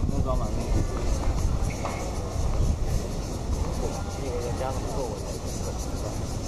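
Outdoor background of a steady low rumble with distant voices talking, and a faint knock near the start.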